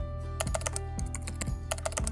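Channel-logo intro sting: music with a steady beat of about two soft thumps a second, over which a keyboard-typing sound effect clicks in two quick runs, one about half a second in and one near the end.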